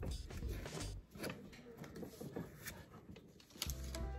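Pokémon trading cards being slid and flipped through by hand: faint, irregular clicks and rustles of card stock.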